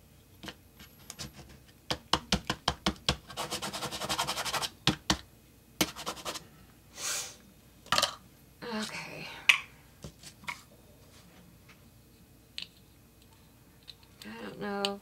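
Art supplies being handled on a craft table: a string of sharp taps and clicks, a fast run of ticks about three seconds in, then a few short scrapes and scattered clicks, all dying away about two-thirds of the way through.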